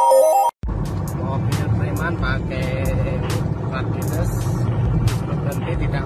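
A stepping synth jingle ends about half a second in. After a brief cut, the steady low engine and road rumble of a car driving at highway speed follows, heard from inside the cabin, with scattered sharp clicks.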